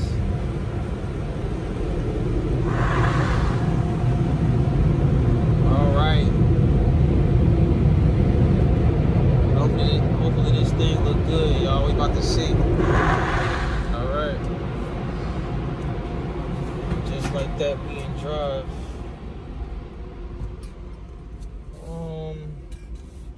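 Automatic car wash machinery heard from inside the truck's cab: a steady heavy rumble, loudest for the first dozen seconds, with two short rushing sweeps about 3 and 13 seconds in, then dying down near the end.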